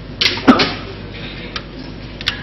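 A man's voice giving one short 'hā' after a brief noisy breath-like burst, then a pause of about a second and a half with only faint room tone and a low steady hum.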